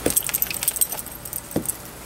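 Light metallic jingling: small metal pieces clinking in quick, irregular, high-pitched ticks over the first second and a half, with a couple of soft low thuds among them.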